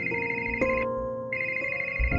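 Mobile phone ringing with an incoming call: an electronic ringtone in two bursts of about a second each, over soft background music.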